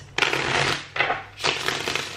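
A tarot deck being shuffled by hand, the cards riffling together in three rapid crackling bursts.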